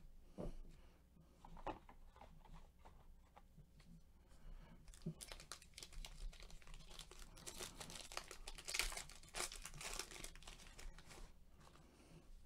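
Foil wrapper of a Panini Mosaic basketball card pack crinkling and tearing as it is opened by hand. A few faint handling clicks come first; the crinkling starts about five seconds in, is strongest a few seconds later, and eases off near the end.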